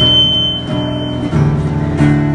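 Acoustic guitar strumming chords, with a steady high tone sounding over it for the first second or so.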